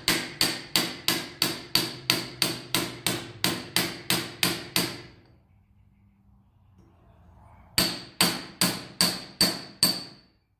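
A hammer tapping a brass punch steadily, about three strikes a second, each with a short metallic ring. The punch drives a seized piston through a vise-held wheel cylinder from a 1946 International KB2, and the pistons are breaking loose. The tapping pauses for about three seconds in the middle and then resumes.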